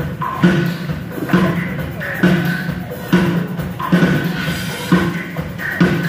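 Live rock band playing through a PA system, with a drum kit keeping a steady beat of strikes about a second apart under guitar and keyboards, heard from the audience seating.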